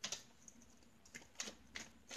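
Tarot cards being shuffled by hand: several faint, irregularly spaced card snaps and clicks.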